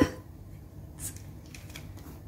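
Faint rustling and a few soft scratchy clicks as over-ear headphones are pulled off the head and lowered around the neck.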